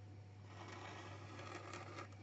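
Faint scratching of a felt-tip pen drawn along a ruler across paper, starting about half a second in, over a steady low hum.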